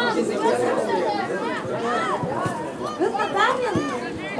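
Sideline chatter at a youth football match: several voices talking and calling out at once, overlapping, many of them high-pitched.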